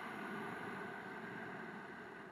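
A person's long, slow breath, a soft steady hiss that gradually thins out and fades toward the end.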